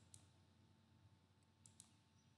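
Near silence with three faint clicks: one just after the start and two close together near the end.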